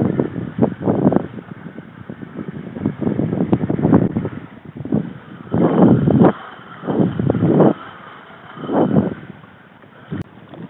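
Choppy sea water sloshing and slapping against a kayak's hull, mixed with wind buffeting the microphone, coming as irregular rushes about every second or so.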